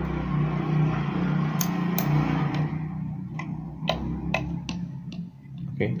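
A series of sharp clicks and knocks as bare copper wire ends are pushed into a wall socket's holes, over a steady low hum that fades about halfway through.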